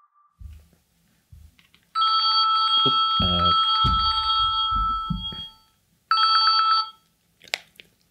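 Mobile phone ringtone sounding twice: a long ring of several steady tones, then a short ring cut off as the call is answered. Low thumps and rustling from handling run underneath.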